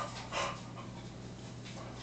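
One short breathy puff of breath about half a second in, then quiet with a steady low hum.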